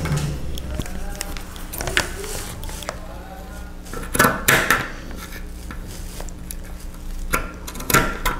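Scissors snipping through frayed cotton cord, trimming the fringe of a macramé heart around a paper template: a handful of separate, irregularly spaced snips over a steady low hum.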